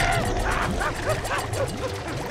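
A swarm of cartoon piranhas making short, high yipping calls, several a second, over background music. A held cry cuts off just after the start.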